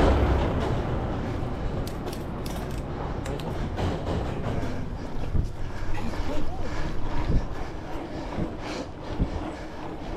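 Mountain bike rolling over stone paving: a steady tyre rumble with scattered knocks and rattles as the suspension fork and frame take the bumps.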